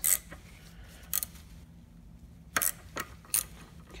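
About five short, sharp metal clicks and clinks, spaced unevenly, as a wrench is worked on the nut of a screw-type pulley installer tool to loosen it.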